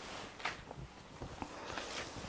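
Light handling sounds on a craft table: one sharp tap about half a second in, then a few faint ticks and rustles as leaves and paper are moved and set down.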